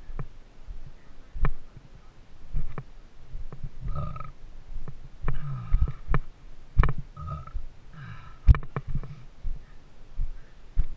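A climber's boots walking over loose granite blocks, with irregular sharp knocks and scrapes of boot on rock, over uneven low rumbling close to the microphone.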